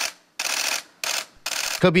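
Four short bursts of hissy, mechanical-sounding noise, each a fraction of a second long, about half a second apart.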